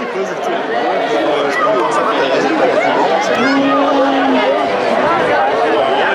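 Crowd of spectators talking and calling out at once, many voices overlapping into a steady babble, with one voice holding a long call about halfway through.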